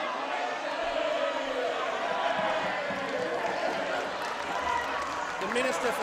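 Many people talking at once, a steady murmur of overlapping voices in a large hall, with no single speaker standing out. Near the end one man's voice rises clearly above the murmur.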